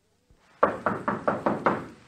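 Knocking on a door: six quick, evenly spaced knocks.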